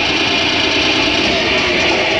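Loud live heavy metal played through a club PA, with distorted electric guitar filling the sound in a dense, steady wash.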